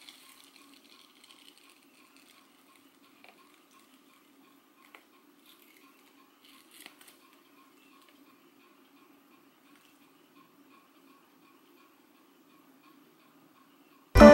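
Near silence: faint room tone with a few soft ticks as a dried peel-off face mask is pulled off the skin.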